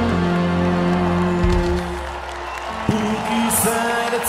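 Rock music playing: held notes die away about halfway through, then a sharp hit comes about three seconds in and new sustained notes follow.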